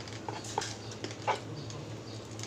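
Close-up mouth sounds of people eating fried food by hand: wet chewing and smacking, with a few short high squeaky whines, the loudest a little over a second in.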